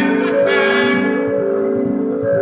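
Music: held chord tones that step to new pitches about every half second, with a bright hissy layer over the first second that then drops away.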